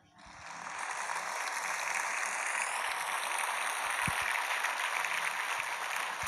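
Studio audience applauding, swelling in over the first second and then holding steady.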